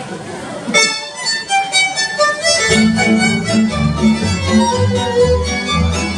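Folk dance music starts about a second in, a fiddle carrying the melody. A low accompaniment on a steady beat joins about two and a half seconds in.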